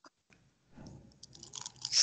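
Faint crackling and rustling noises over an online call's microphone, a small click at the start and the crackle growing in the last half second as a voice is about to speak.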